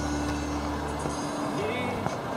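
Background music with sustained low notes, which stop a little over a second in; a short gliding tone follows near the end.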